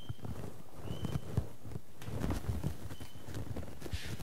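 Soft, irregular low knocks and thuds, with a few faint, short high squeaks.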